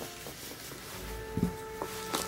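Soft handling of a cloth-topped rubber mouse mat as it is unrolled and held flat, with a couple of light ticks in the second half. Faint held notes of background music run underneath.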